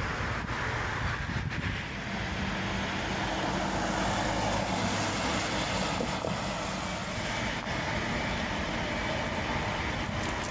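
Steady outdoor road-traffic noise, with a vehicle driving past that swells a little around the middle.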